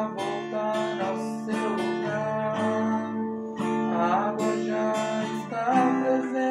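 Phoenix acoustic guitar strummed in a steady rhythmic pattern of down and up strokes on a D minor chord, moving to another chord near the end.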